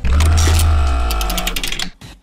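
News-bulletin transition sting: a sudden hit with a low rumble and a held chord, with fast ticking over it in the second half, fading out near the end.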